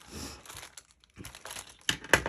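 Plastic craft packaging crinkling and rustling as items are handled and moved about, with a sharper tap near the end.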